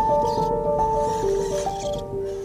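Background music: a melody of held notes that change pitch every half second or so.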